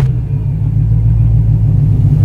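Loud, steady low rumble of a car-engine sound effect in a channel intro sting.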